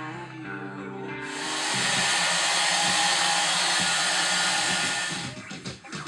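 A loud, steady hiss of noise starts abruptly about a second in and fades out about four seconds later, over background music.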